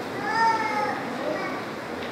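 A high-pitched voice calls out once, about two-thirds of a second long, rising and then falling in pitch. A fainter, shorter call follows a little over a second in.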